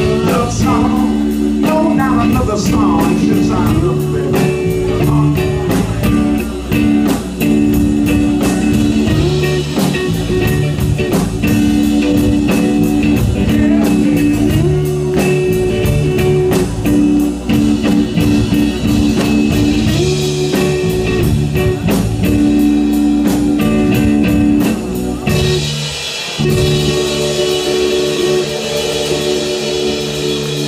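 Live blues band playing: electric guitar and singing over held keyboard chords, bass and drums. The band drops out briefly near the end, then comes back in.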